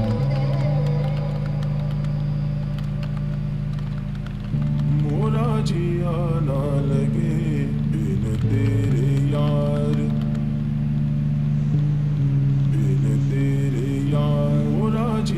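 Background music: a steady low drone, joined about four and a half seconds in by a wavering melodic line.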